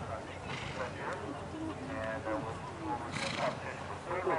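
Horse trotting on sand arena footing, with indistinct voices in the background and a short hissing burst about three seconds in.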